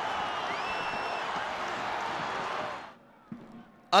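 Football stadium crowd noise, a steady din of cheering with a short rising whistle about half a second in; it fades out about three seconds in.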